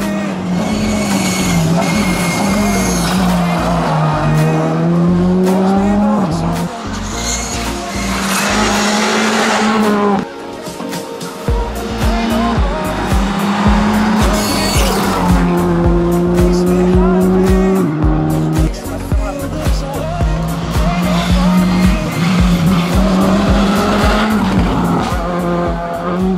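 Skoda Fabia R5 rally car's turbocharged four-cylinder engine revving hard as the car passes through corners. Background music with a steady beat plays over it.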